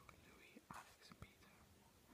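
Near silence: a person whispering faintly under their breath, with a couple of faint clicks.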